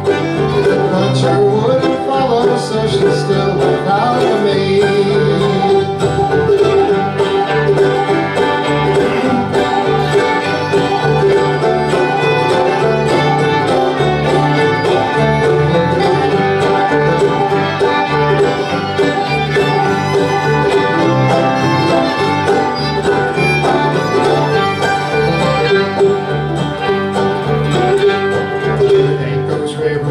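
Instrumental break of a live acoustic string band between sung verses: bowed fiddle with banjo and plucked-string accompaniment, playing steadily in a bluegrass/cowboy-song style.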